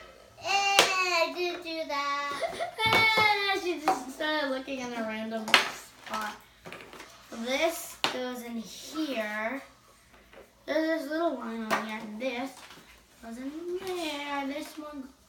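Children's voices, high-pitched, some sounds long and drawn out, with a few sharp clicks from kit pieces being handled on the table.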